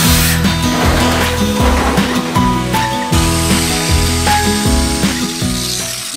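An angle grinder cutting old corrugated sheet metal roofing, a continuous high hiss of the disc on the metal, heard together with background music that has a steady beat.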